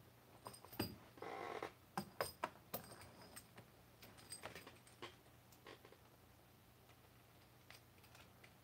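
Coax jumper cable being picked up and handled: scattered light clicks and knocks of its metal connectors, with a short rustle of the cable about a second in. It then settles to faint ticks of a connector being fitted.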